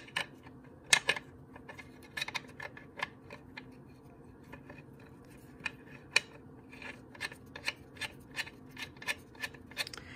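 A steel bolt being turned in by hand into the aluminium case of a Mitsubishi Evo X DCT470 dual-clutch transmission: a string of light, irregular metallic clicks and ticks as the threads and fingers work it. The loudest clicks come right at the start and about a second in.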